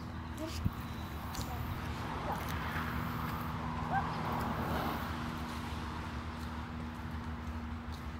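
Longboard wheels rolling on a concrete driveway: a rough rolling rumble that swells a couple of seconds in and fades as the board moves away. A steady low hum runs underneath.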